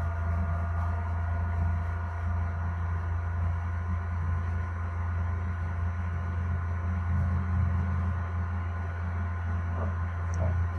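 Steady low electrical hum, with a few faint steady higher tones over it. It is unchanging throughout.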